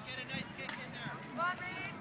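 A spectator's voice calling out "Come on" near the end, over faint outdoor background noise.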